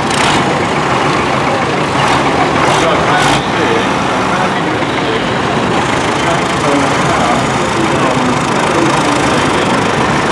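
Diesel engines of blue Ford tractors running as they drive slowly past close by, one after another, with people's voices in the background.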